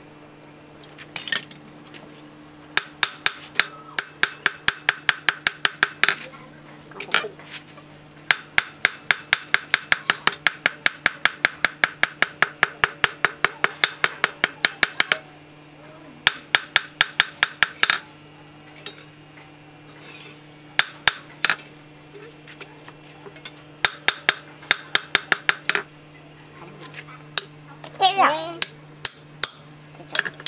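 Blacksmith's hand hammer forging a steel knife blank from a piece of brake disc rotor on an anvil: runs of ringing metal-on-metal blows, about five a second, each run lasting a few seconds, the longest about seven seconds in the middle.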